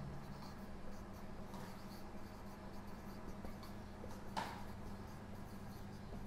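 Marker pen writing on a whiteboard: faint short strokes, with one louder stroke about four and a half seconds in.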